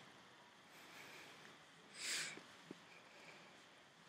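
Near silence: faint room tone, broken about two seconds in by one short soft hiss and a faint click just after.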